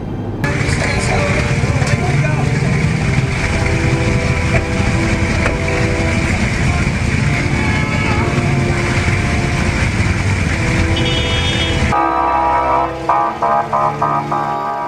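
Busy city street noise: traffic and many people talking at once. About twelve seconds in it gives way to music.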